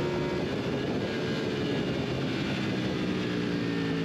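BMW F 900 R race bike's parallel-twin engine running hard at high revs, with wind rushing over an onboard camera; the engine pitch holds fairly steady.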